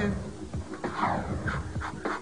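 A woman in labour panting through contractions, with a long noisy breath about a second in, then quick short puffs of breath.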